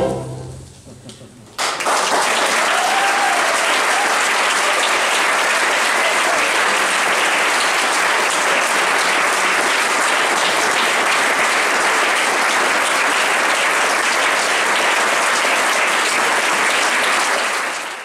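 The last notes of a sung tango fade out, and about a second and a half in an audience breaks into applause. The clapping holds steady and dies away right at the end.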